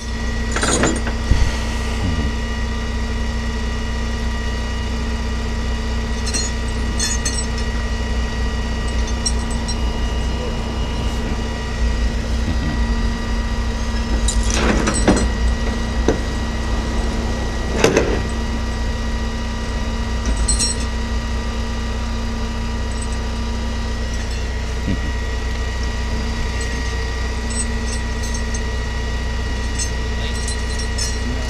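A vehicle engine idling steadily, a low rumble with a constant hum over it, broken by a few short knocks about a second in and twice more past the middle.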